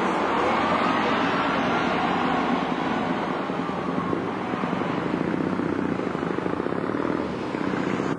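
Diesel engine of a double-decker bus pulling away close by and then moving off down the street, the sound easing a little after about three seconds.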